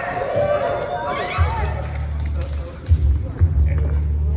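A person's voice, then a low rumble broken by sudden thuds, about one and a half, three and three and a half seconds in.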